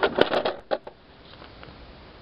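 Handling of a hard plastic Little Tikes children's toy: a quick run of sharp knocks and clicks in the first second, then only low background hiss.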